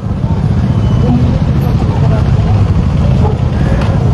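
Many motorcycles running together at low speed, a steady, loud, low-pitched din of engines with no single bike standing out.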